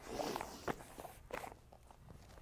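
Faint scuffing and light taps of wrestlers' shoes, hands and knees on a wrestling mat as they move back into position, with two soft knocks in the middle.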